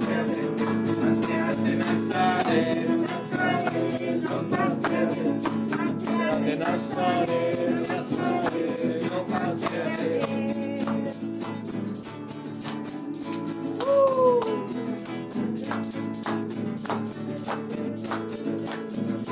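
A small group singing along to a steady beat of a hand-held tambourine's jingles and hand clapping. The singing is strongest in the first half and thins out later, while the tambourine and clapping keep going.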